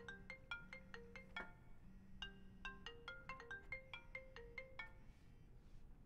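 Mobile phone ringing with a quiet marimba-like ringtone melody of short plucked notes, played through twice with a short gap between.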